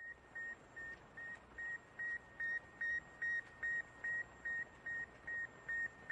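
Heart-monitor-style electronic beep sound effect: short single-pitch beeps repeating steadily about two and a half times a second, growing louder over the first few seconds.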